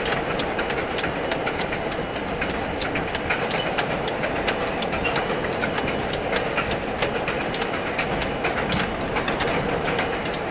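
R42 subway train running along an elevated line, heard from inside the lead car: a steady rumble of wheels and motors with frequent irregular clicks and clatter of wheels over the rail joints.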